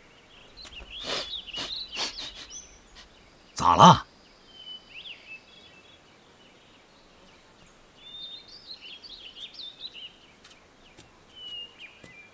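Birds chirping over steady outdoor ambience. A few sharp clicks come in the first two seconds, and a brief loud call about four seconds in.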